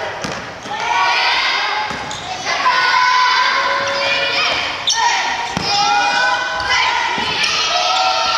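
Children shouting and calling out almost without pause in an echoing gymnasium during a dodgeball game. The voices are high-pitched, and a few sharp thuds of the ball land over them, the clearest around five to seven seconds in.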